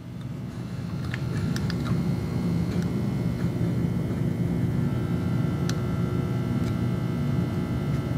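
Bench power supply humming with a low, steady electrical hum that grows louder over the first couple of seconds as it is turned up to 100 volts DC under a heater load drawing several amps, then holds steady; a few faint clicks.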